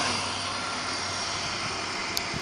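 InterCity 125 High Speed Train passing at speed: the steady rush of its coaches rolling along the track, over the drone of the diesel power car that has just gone by.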